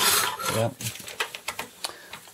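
Handling noise on the rear panel of a pure sine wave power inverter: a brief rustle, then a few light, sharp clicks and taps as fingers touch the panel near its fuse holder and terminal blocks.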